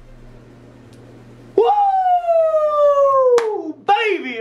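A man's long, high "whooo" of excitement, starting about a second and a half in and falling slowly in pitch for about two seconds, with a sharp click near its end. Before it there is only a faint steady hum.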